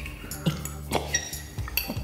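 A metal spoon clinking in a mug as a bonobo scoops out her food: a few light clinks with a brief ring, about half a second in and again around a second.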